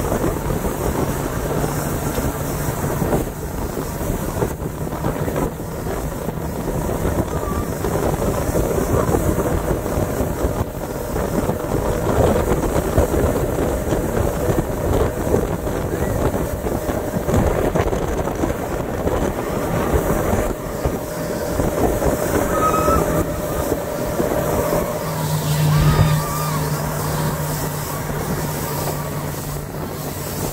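Outboard motor of a speedboat running at speed, with wind buffeting the microphone and the churning wake hissing. A low steady hum from the motor strengthens in the last few seconds.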